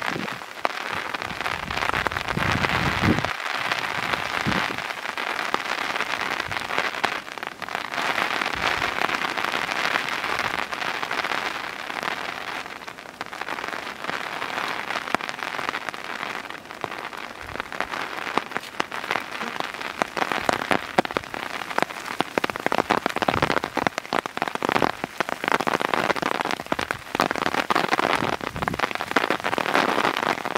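Heavy rain falling steadily, with many individual drops heard striking sharply through it.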